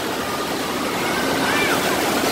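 Waves in an indoor wave pool breaking and churning: a steady rush of surf.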